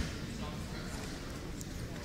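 Faint voices and a few light footsteps on a wrestling mat, with a short knock right at the start.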